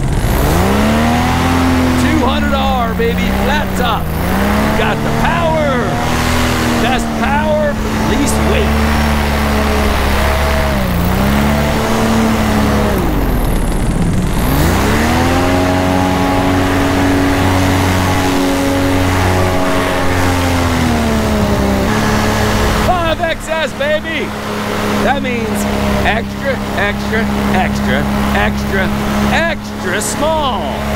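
Paramotor engine and propeller running in flight, the revs dipping and picking up again several times in the first half, with one deep dip and a climb back to higher revs near the middle, then holding steady.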